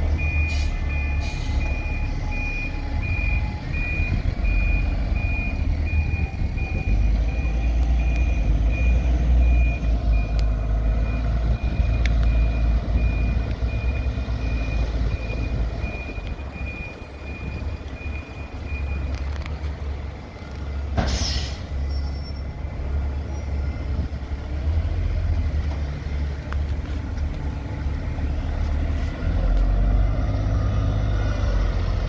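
Single-deck diesel bus reversing out of a stand, its reversing alarm beeping steadily over the low engine rumble for about nineteen seconds. About two seconds after the beeping stops there is one short, sharp hiss of air from the brakes, and the engine keeps running as the bus moves off.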